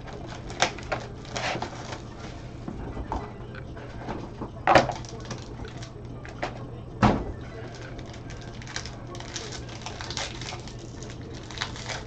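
Gloved hands opening a trading-card box: scattered clicks and rustles of cardboard and plastic wrapping, with two louder knocks about five and seven seconds in.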